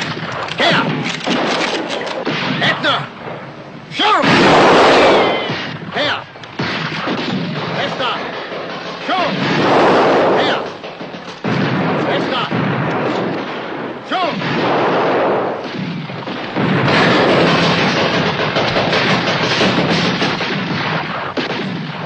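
Repeated gunshots amid shouting and yelling from many men, swelling loud several times, as in a staged battle drill.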